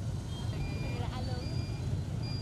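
Street traffic of many motorbikes packed in a jam: a steady low engine rumble, with faint voices and a few brief high beeps.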